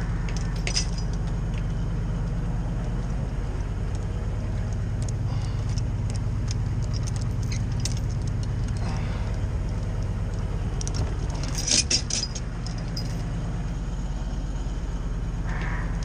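Bucket truck engine running steadily while the boom swings, with the hanging chain and log tongs jingling and clinking now and then, loudest in a burst of clinks about twelve seconds in.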